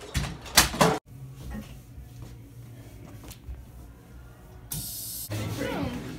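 A few sharp scrapes and knocks in the first second, then faint room noise. Music starts to fade in near the end.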